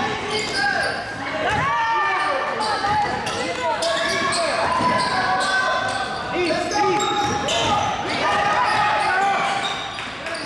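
Basketball game on a hardwood gym floor: the ball dribbling and bouncing, sneakers squeaking as players cut and stop, and scattered shouts from players and spectators, all echoing in the gym.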